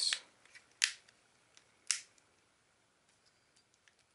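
Plastic back case of a Blu Studio Energy phone being pressed onto the body, its clips snapping into place: two sharp clicks about a second apart, the second the louder, with a few faint ticks later.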